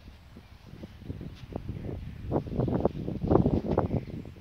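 Low rumble with irregular knocks and rustles on the microphone, quiet at first and growing louder over the second half.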